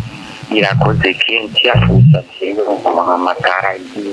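Speech only: people talking in conversation, with one short pause about halfway through.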